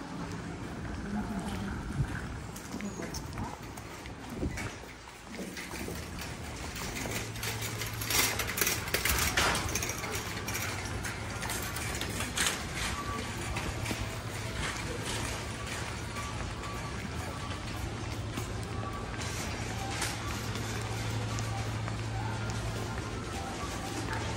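Supermarket interior ambience: background voices of shoppers and in-store music, with a steady low hum that sets in about seven seconds in, once inside the doors, and a few knocks and clatters.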